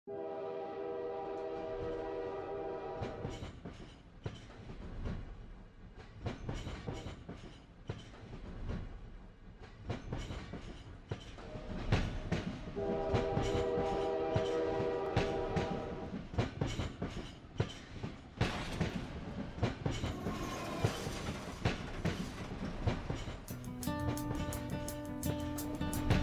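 A train: its horn sounds a multi-note chord twice, about three seconds each time, over the constant rapid clatter of wheels on rail joints.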